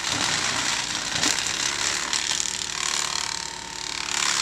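Tractor-mounted flail hedge cutter chopping through dry hedge branches: a dense, continuous crackling and crunching of spinning blades over the Claas tractor's engine running underneath.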